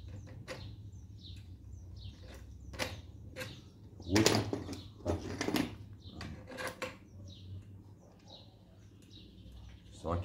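Scattered metal clicks and clinks as a bicycle pedal is handled and fitted onto a steel axle stub, the loudest a little past four seconds. Small birds chirp in the background.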